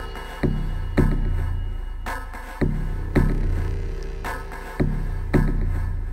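Synthesized drum pattern from the Synthetic Kits "Low Fear" Combinator patch in Propellerhead Reason: deep, heavy low drum hits in groups of two or three, each ringing out with a long low rumble, the bar repeating about every two seconds. A dark, film score-ish patch.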